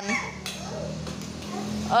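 Room noise with faint voices and a short knock about half a second in, as a small ball is kicked off across a tiled floor.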